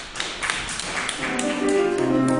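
Audience applauding with scattered, irregular claps. About a second in, chamber music with piano fades in underneath and grows louder.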